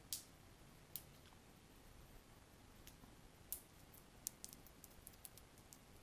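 Faint, short clicks of a signal cable and its metal RCA plugs being handled, a few spaced out and then a quick run of them in the second half; otherwise near silence.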